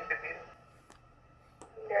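Speech: a short spoken phrase from a low-quality interview recording playing back. It is followed by a quiet gap holding two faint clicks, and a man begins to speak near the end.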